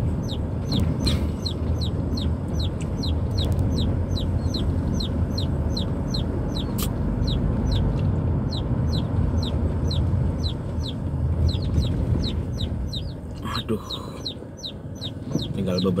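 Chicken peeping steadily, a high falling peep about three times a second, heard inside a moving car over its engine and road rumble. The chickens are Burmese crosses carried in the car.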